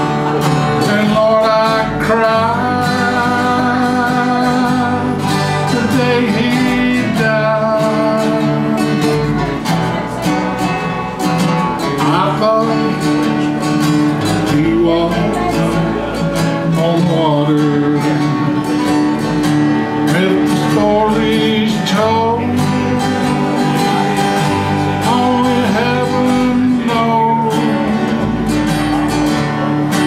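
Country song played by an acoustic band: acoustic guitars and an electric bass under a lead line of notes that bend and slide in pitch, with no sung words.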